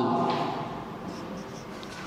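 Marker pen writing on a whiteboard, strokes of a felt tip dragged across the board's surface.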